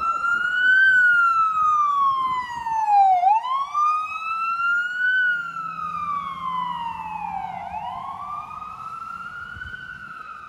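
FDNY ambulance siren sounding a slow wail, its pitch rising and falling in cycles of about four seconds. It grows fainter over the second half.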